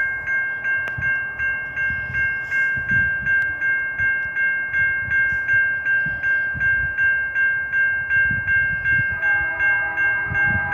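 Railroad crossing warning bell ringing steadily, about three strikes a second. About nine seconds in, a lower, steady horn chord starts faintly underneath: the approaching train's horn.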